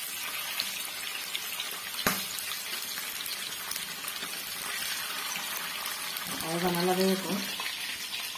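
Masala-marinated chicken pieces deep-frying in hot oil in a kadai, sizzling steadily, with one sharp click about two seconds in.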